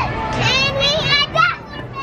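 Children's high-pitched voices shouting and squealing without clear words for about a second and a half, then dropping away near the end.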